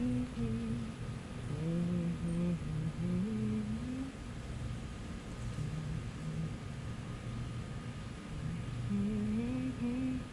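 A person humming a tune in a low voice, stepping through a melody for the first few seconds, trailing off, then picking up again near the end.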